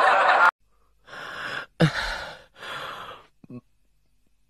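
A person breathing audibly: three breathy breaths of about half a second each, following a burst of speech that cuts off suddenly about half a second in.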